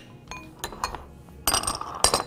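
A small glass prep bowl clinking as hard dried limes (loomi) are handled in it. There are a few light clicks, then a louder clatter about a second and a half in.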